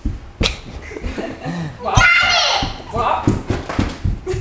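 A toddler's high-pitched vocalising about halfway through, among a few sharp slaps and knocks.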